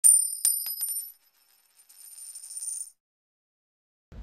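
Logo sound effect of bright, high metallic chimes: a handful of quick ringing strikes in the first second that fade out, then a softer high shimmer that swells about two seconds in and cuts off near three seconds.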